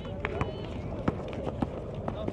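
A basketball being dribbled hard on a concrete court, giving several sharp knocks, with players' sneakers running on the court. Voices carry in the background.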